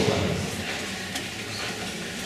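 Room tone of a large lecture hall during a pause in amplified speech: a steady hiss with one faint click about a second in.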